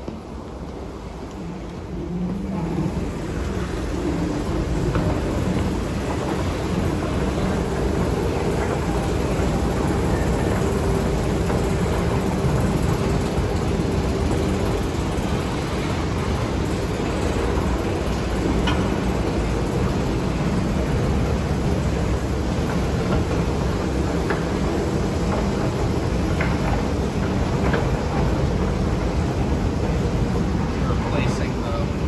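Westinghouse escalator running, a loud steady mechanical rumble that swells about two seconds in and then holds, heard while riding it.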